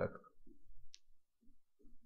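Faint, scattered clicks and soft taps of a stylus on a pen tablet during handwriting, with one sharper click about a second in.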